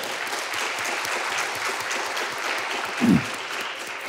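A congregation clapping steadily in applause, with one short vocal call rising over it about three seconds in.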